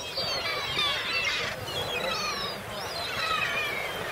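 A flock of gulls calling, many overlapping calls that fall in pitch, one after another.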